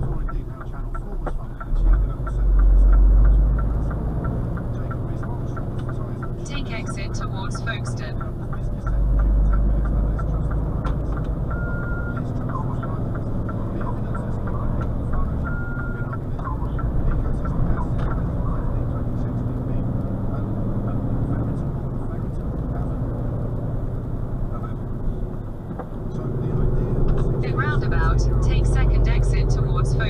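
Inside a lorry cab: the HGV's diesel engine running with road rumble as the truck drives on, the engine note rising near the end as it pulls away. Two short beeps sound a few seconds apart partway through.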